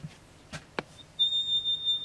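A high-pitched steady tone, like a whistle, sounding for about a second in the second half, after two light clicks.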